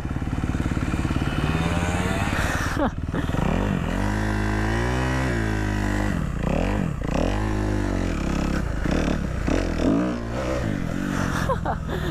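Dirt bike engine being ridden close to the microphone, its revs rising and falling in repeated swells about a second long, with a sharp drop in pitch about three seconds in.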